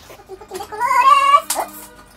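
A cat meowing once, one drawn-out, slightly rising meow, followed by a short click.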